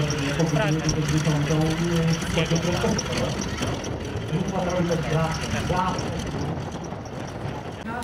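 A voice talking over the steady running of a taxiing Grumman Ag Cat biplane's radial engine at low power.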